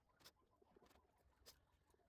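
Near silence: room tone with two faint short ticks, one about a quarter second in and one about a second and a half in.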